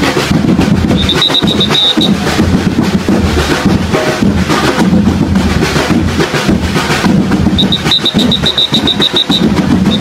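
Festival dance music driven by loud, dense drumming of bass and snare drums, with a rapid high chirping about a second in and again near the end.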